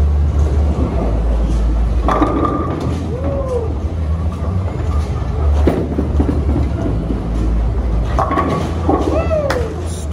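Bowling alley din: a steady low rumble of bowling balls rolling down the lanes, with a sharp knock just before six seconds in as a ball lands on the lane.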